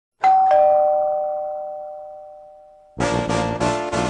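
A two-note ding-dong doorbell chime, a high note then a lower one, ringing and slowly fading. About three seconds in, brass band music starts, with trombones and trumpets playing in punchy rhythmic chords.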